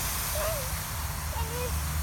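Garden hose spraying a fine mist of water over the lawn, a steady faint hiss, with a low rumble underneath.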